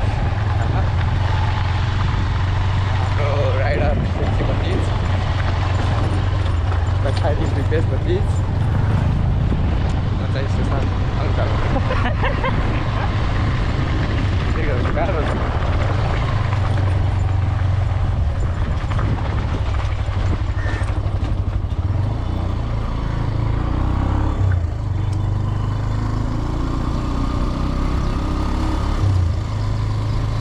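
Motorcycle engine running steadily while riding, with wind rushing over an action camera's microphone.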